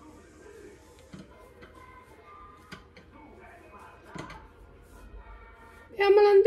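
Quiet indoor room with a few faint knocks and clicks, the clearest about a second in, near the middle and a little after four seconds, over faint background voice or music.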